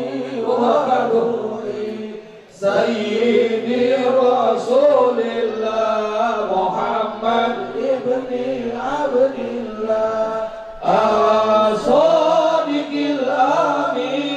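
Men's voices chanting a religious devotional song through microphones and a PA, in long sung phrases. There are short breaks for breath about two and a half seconds in and again near eleven seconds.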